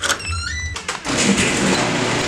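Garage door opener running as the door lifts, with heavy rain noise pouring in from about a second in. There is a short rising squeak near the start.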